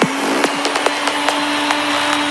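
Electronic dance track in a breakdown: the kick drum and bass drop out, leaving a rising wash of synth noise, one held synth note and steady hi-hat ticks about five a second.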